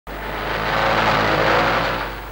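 A car driving past, its engine and road noise swelling to a peak about a second and a half in, then fading.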